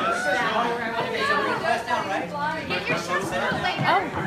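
Several people chattering over one another.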